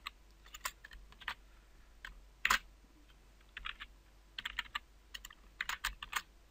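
Typing on a computer keyboard: irregular key clicks, singly and in quick clusters, with one louder keystroke about two and a half seconds in.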